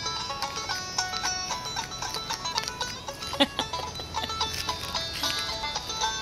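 Recorded music played from a phone's small speaker: a melody of quick, stepping high notes.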